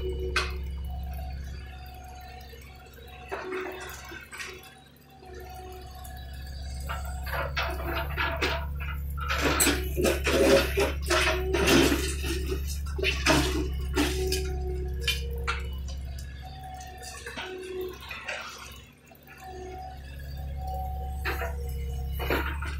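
John Deere 50D compact excavator's diesel engine running with a steady low drone and short recurring whines as the arm and bucket move. Broken concrete and rocks knock and clatter against the steel bucket, busiest from about nine to fourteen seconds in.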